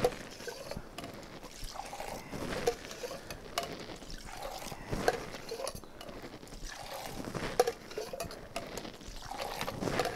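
Cocktail being thrown: the liquid is poured back and forth between two stainless-steel shaker tins in a long stream, over and over, with sharp metal clinks as the tins touch.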